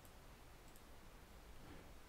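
Near silence with a couple of faint computer mouse clicks, the handler being added in the editor.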